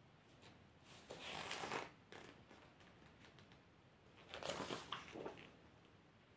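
Two short bursts of rustling and crinkling, about a second in and again about four seconds in, with a few light clicks between: packaging being handled.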